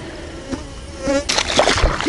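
A flying insect buzzing close by, its pitch rising as it passes about a second in, followed by a rustle near the end.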